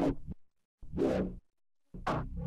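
Short neuro-bass synth sample hits played one at a time with silence between: one tails off just after the start, another sounds about a second in, and a third begins right at the end.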